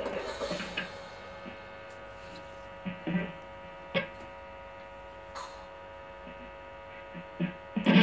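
Electric guitar rig through a small practice amp humming steadily, with a few faint string plucks and taps on the guitar. Ringing notes fade out in the first second.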